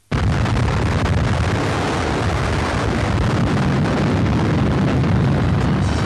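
Explosion sound laid over the atomic bomb burst in a newsreel: a sudden blast a fraction of a second in, then a dense, heavy rumble that holds loud and steady for about six seconds.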